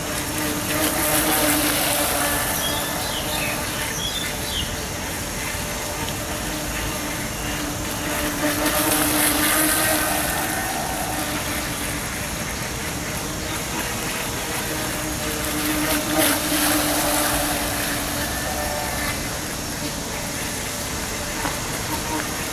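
Radio-controlled speedboat running at speed on a pond: a steady motor hum with hissing spray from the hull, swelling loudly three times as the boat passes close.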